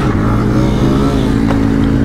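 KTM Duke 250's single-cylinder engine running at a steady, even note while riding at speed, with wind rush on the camera microphone.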